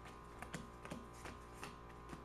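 Playing cards dealt one at a time onto a wooden tabletop: about four light clicks, roughly every half second, over a faint steady hum.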